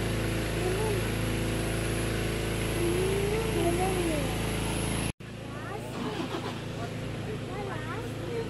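A car engine idling with a steady low hum, which stops abruptly about five seconds in.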